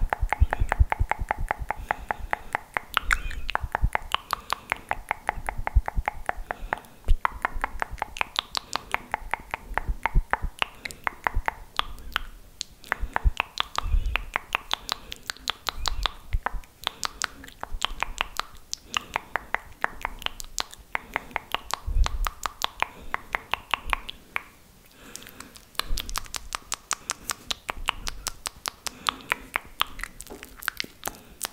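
Fast, wet mouth sounds right up against a microphone: rapid runs of tongue clicks and lip smacks, several a second, with a few low thumps on the mic.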